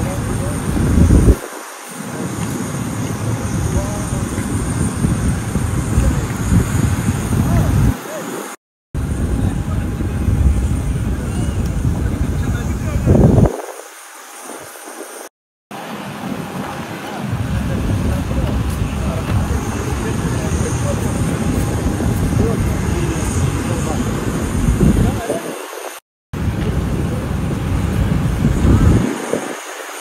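Indistinct voices over a loud, uneven low rumble, broken by three short drops to silence.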